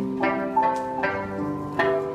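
Instrumental passage of a song played on a plucked string instrument: chords struck about three times, each ringing on with several held notes.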